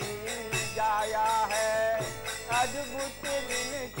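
Devotional kirtan: a voice sings a gliding melody over a harmonium, with a two-headed mridanga drum and karatalas (small brass hand cymbals) clashing in a steady rhythm.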